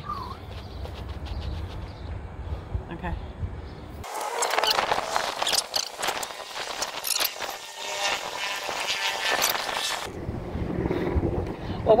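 Wind buffeting the microphone as a low rumble, with scattered rustles and small clicks from handling. The rumble drops away for several seconds in the middle and returns near the end.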